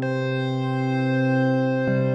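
Piano-like keyboard tones played from a MIDI keyboard: a low chord held and ringing, with another note struck near the end.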